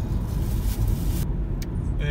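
A car driving along a road, heard from inside the cabin: a steady low rumble of engine and tyres. A higher hiss over it drops away a little past halfway.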